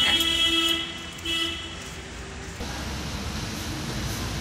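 Two flat car-horn toots, one of under a second and a shorter one just after, then the low steady running noise of a car moving through a parking garage.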